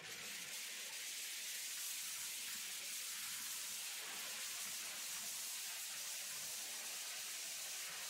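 Steady, hissing rush of wind over an open-top convertible driving at speed, with no breaks or separate events.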